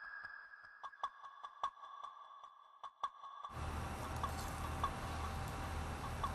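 Held high electronic tones with scattered sharp clicks, which stop abruptly about three and a half seconds in. Steady room noise with a low hum follows.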